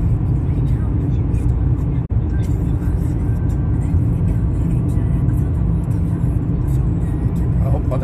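Steady road and engine noise heard inside a moving car's cabin, with a sudden brief drop-out about two seconds in.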